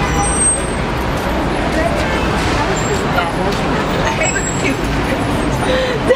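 Busy city street: a steady rumble of road traffic with passers-by talking faintly.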